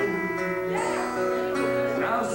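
Live band music: a guitar playing while a man sings into the microphone.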